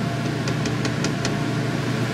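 Blower door fan running steadily, an even low hum with air noise, while it draws a vacuum on the house. A short string of light ticks sounds in the first half.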